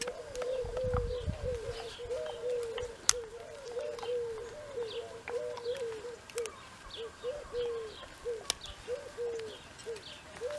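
Pigeons cooing in a steady, unbroken run of short rising-and-falling coos, with small birds chirping higher up. A few sharp clicks stand out, one about three seconds in and another near the end.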